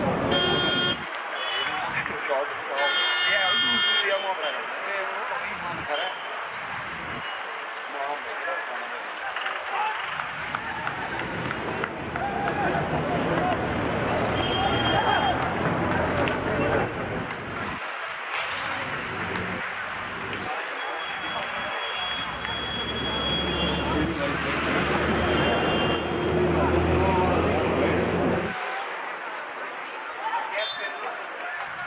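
Road traffic beside an open ground: two short vehicle horn toots in the first few seconds, then a steady engine rumble from about the middle that stops shortly before the end, over a haze of distant voices.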